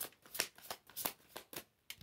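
Tarot deck being shuffled by hand: a run of quick, irregular card snaps and flicks that pause shortly before the end.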